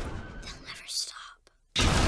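Horror-film soundtrack: a faint whispered voice, a moment of near silence, then a sudden loud hit of sound near the end.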